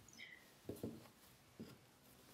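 Near silence, with a few faint soft taps and pats of hands pressing crumbly shortbread dough flat on a silicone baking mat, two close together just under a second in and one more later.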